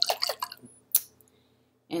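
Salad dressing of olive oil and lemon juice sloshing in a lidded glass mason jar shaken by hand, about five sloshes a second, as the oil and juice are emulsified; the shaking stops about half a second in. A single sharp click follows about a second in.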